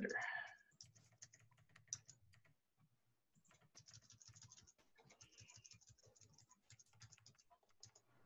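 Faint, rapid key clicks of a computer keyboard being typed on, in two runs with a short pause about three seconds in.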